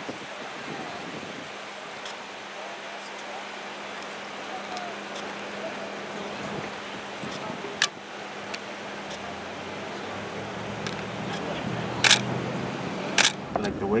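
Street background noise with distant voices and a steady low hum, broken by a few sharp clicks in the second half, the loudest two close together near the end.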